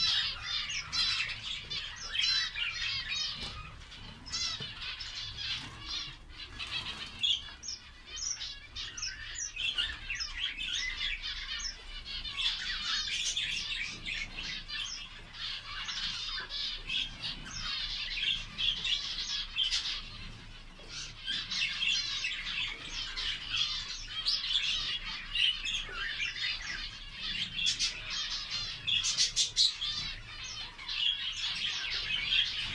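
A room full of small cage birds chirping and chattering nonstop, many high short calls overlapping into a dense chorus.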